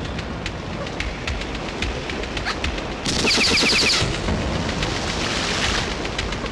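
Film gunfire sound effects: scattered sharp shots, then a loud rapid burst of automatic fire lasting about a second, about three seconds in.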